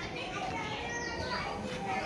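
Children's voices calling out and playing, with a high falling call repeating about every two seconds.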